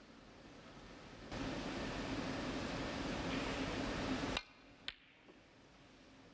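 Snooker audience applauding, starting abruptly a little over a second in and cut off suddenly just past four seconds, followed by a single sharp click of a snooker ball being struck.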